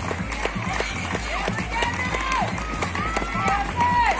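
Young voices shouting and calling out across a rugby pitch, short rising and falling calls one after another, over scattered knocks of running footsteps on grass.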